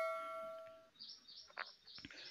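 A bell-like chime ringing out and fading away over about the first second. Faint, brief high chirps follow.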